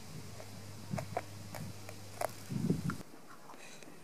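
Scattered light clicks and taps of a metal nail tip on a plastic lid as loose seeds are pushed around, over a steady low hum that cuts off about three seconds in.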